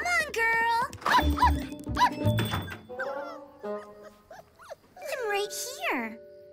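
A cartoon puppy voicing short rising-and-falling yips and whines over light background music, with dull thunks about a second in and a long falling cry near the end.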